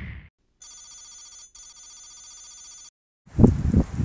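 Electronic telephone-style ring from a TV intro sound effect, a fast trilling tone in two bursts lasting about two seconds in all. Near the end it gives way to loud wind and handling noise on a phone's microphone outdoors.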